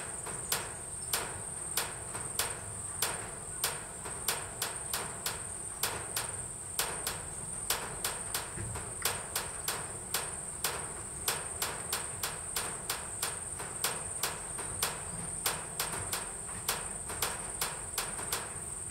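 Steady high-pitched insect chorus, with sharp clicks recurring about twice a second throughout.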